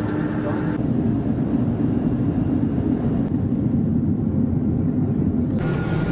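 Jet airliner's engines running on the airfield, heard from outside as a steady low rumble. Near the end it cuts to a different steady cabin drone with a faint high tone.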